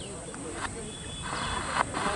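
Low murmur of a crowd of spectators talking, with short high bird chirps over it and a brief hissing rustle in the second half.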